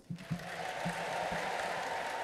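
Congregation applauding, a steady even clapping that starts a split second in.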